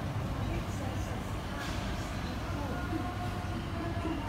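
Outdoor city background: a steady low rumble with faint, scattered distant voices.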